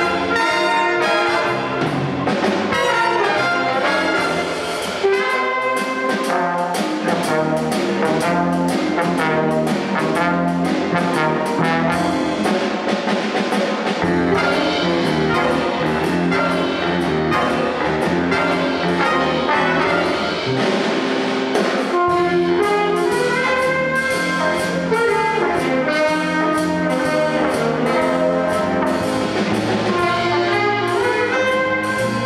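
Big band of saxophones, trombones and trumpets playing a jazz tune in a shuffle rhythm over a drum kit, loud and steady.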